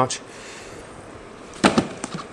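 A short, loud plastic clack near the end as the lid is pressed onto a Vitamix blender cup.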